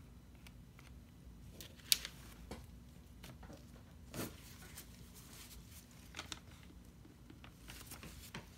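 Faint scattered clicks and knocks of painting tools and supplies being handled on a work table. The sharpest click comes about two seconds in, with a short scrape about four seconds in.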